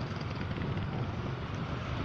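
Steady hum of city road traffic with wind buffeting the microphone.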